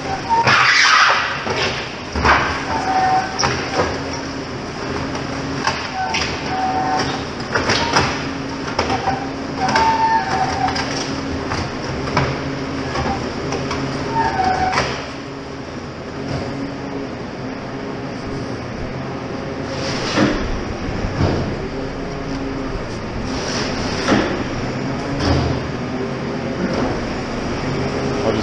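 A JCB 535-95 telehandler's diesel engine running while its hydraulic concrete mixer bucket turns and discharges concrete down its chute, with repeated clanks and knocks throughout.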